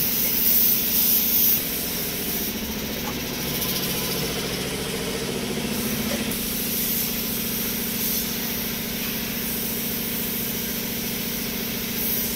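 Compressed-air paint spray gun hissing loudly for about the first second and a half. After that a steady mechanical hum from the air compressor feeding it runs on under a fainter hiss.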